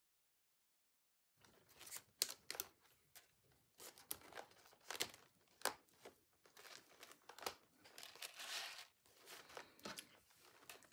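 Cut plastic binder rings being worked out of the punched holes of a thick stack of paper pages: a quiet run of irregular sharp clicks and paper rustling, starting about a second and a half in.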